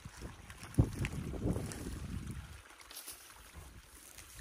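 Wind buffeting the microphone over the handling of sticks and mud at a beaver dam, with one sharp knock just under a second in.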